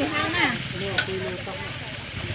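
Oil sizzling steadily as food fries, with one sharp click about halfway through.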